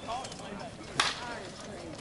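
Slowpitch softball bat hitting the ball: one sharp crack about a second in, with faint voices around it.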